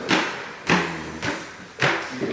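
Footsteps going down wooden stair treads: three heavy steps, the last two about a second apart.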